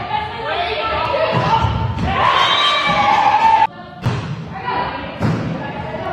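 Volleyball rally sounds: thuds of the ball being struck, under players' voices calling out. The sound cuts out abruptly for a moment about three and a half seconds in, then picks up again.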